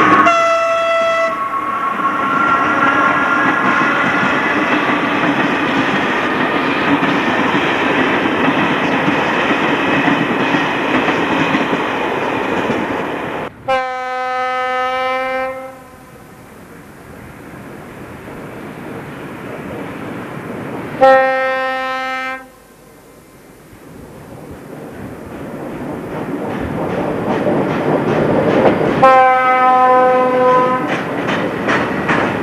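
Czech electric locomotive passing close by, its running noise carrying a rising whine. Then a train horn sounds three times, each blast one to two seconds long: about halfway through, about two-thirds through, and at the end. Quieter rail noise swells between the blasts as passenger cars and freight wagons roll past.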